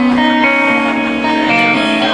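Live guitar music, loud, with held chords changing every half second or so.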